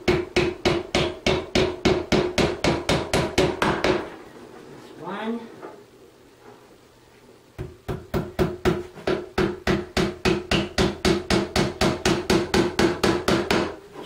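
Hammer driving small nails through a thin bookcase back panel into the middle shelf: rapid light strikes, about four a second, with a slight ring. The strikes stop after about four seconds and start again about seven and a half seconds in.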